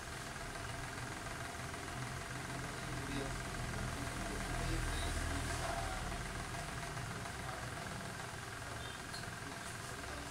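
A steady low mechanical hum, like an engine idling, growing a little louder about halfway through and then easing, under a faint hiss.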